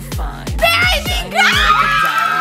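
Excited, high-pitched screaming from several people, starting about half a second in and swelling again past the middle, over pop music with a steady beat of about four strokes a second.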